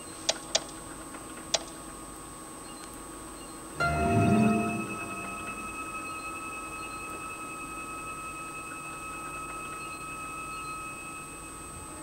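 Synthesized science-fiction sound effect. A few faint clicks come first, then about four seconds in a low swell rises and gives way to a steady electronic ringing tone with several pitches, which holds for several seconds and eases off near the end.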